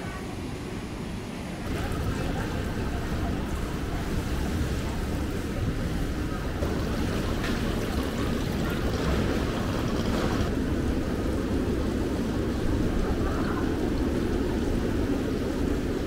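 Water running and splashing steadily in live-seafood tanks, louder from about two seconds in.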